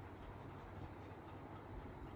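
Faint steady low hum with a light hiss: background room tone, with no distinct events.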